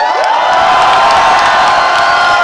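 Concert audience cheering and screaming as a song ends, several high voices sliding up in pitch into long held shrieks.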